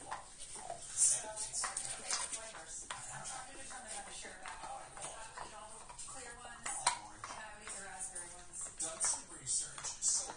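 Muffled background voices and music, with a few sharp clicks, one about a second in and another near seven seconds.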